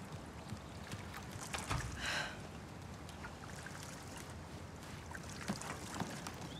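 Swimming-pool water lapping and splashing softly around a person standing in it, with a slightly louder splash about two seconds in.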